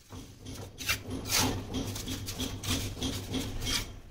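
Steel mason's trowel scraping and spreading wet cement mortar on top of a brick wall: repeated scraping strokes, about two a second, over a low steady hum.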